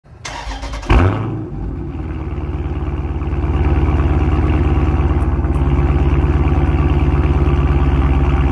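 Car engine heard at the exhaust tip, starting with a sharp flare about a second in, then settling into a steady idle with an even, fast pulse that gets a little louder a few seconds in.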